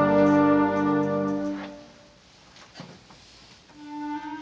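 Concert band holding a loud sustained chord that is cut off a little under two seconds in and dies away, leaving a near-silent rest before the band comes back in with a new chord at the very end.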